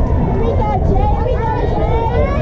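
Several overlapping voices calling out across a softball field, with a steady low rumble underneath.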